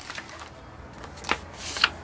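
Paper instruction sheets and plastic packaging of a plastic model kit being lifted out of the box and handled, rustling, with two short crisp rustles in the second half.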